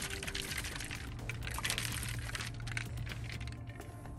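Coca-Cola fizzing up in an open can after Mentos were dropped in: a steady crackling hiss of bursting bubbles that eases off toward the end.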